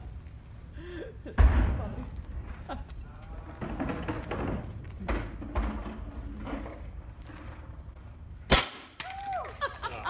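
A heavy low thump about a second and a half in, then a single sharp crack near the end, with faint voices murmuring in between.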